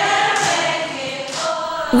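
A class of schoolgirls singing a song together in English, several voices in unison on long held notes.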